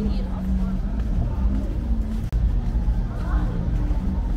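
Busy city street ambience: a steady low rumble of traffic with a car engine close by, and passers-by talking.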